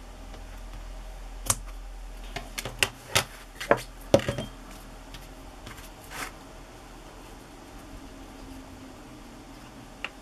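Scissors snipping a strip of woven trim and craft tools being handled on a cutting mat: a handful of sharp clicks and taps in the first half, the loudest at about four seconds in.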